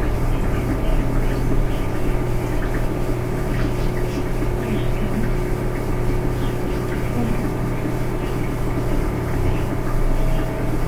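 Steady low hum over constant background noise, unchanging throughout, with no speech.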